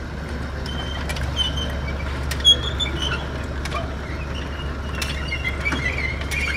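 Turbo Systems hinged steel-belt chip conveyor running: a steady low hum from the gear motor, with scattered clicks and brief high squeaks from the belt. One click about two and a half seconds in is the loudest.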